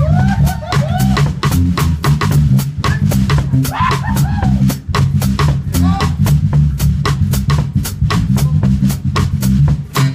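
Live electric bass played in a fast, busy rhythmic groove together with a drum kit, the bass notes loud and low under steady sharp drum hits.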